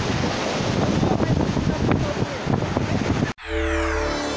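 Wind rumbling on a phone microphone over surf, with people talking indistinctly. It cuts off abruptly a little over three seconds in, and a music sting with sweeping tones begins.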